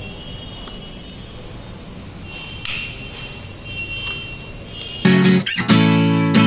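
Low room noise with a faint high tone that comes and goes and a brief rustle of handling, then loud strummed guitar music starts abruptly about five seconds in.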